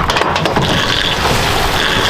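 Loud, steady rush of wind and water on an open boat, with a few light clicks and rustles near the start as a wet cast net is handled.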